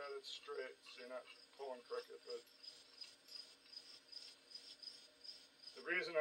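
Crickets chirping steadily in the background, a thin high pulsing trill, with a man's muttered voice in the first couple of seconds.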